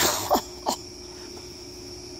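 A person's short cough-like bursts: one at the start, then two quick sharp ones within the first second, each dropping in pitch. Steady cricket chirping carries on underneath.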